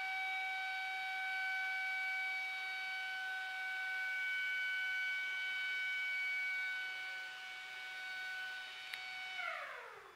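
A siren sounding one long steady tone, then winding down in pitch and fading near the end.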